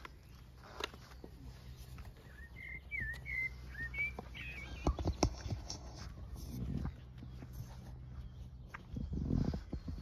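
A bird calls outdoors, a quick run of short, twisting chirps from about two to four seconds in, over a steady low background rumble. A few sharp clicks follow just after the middle.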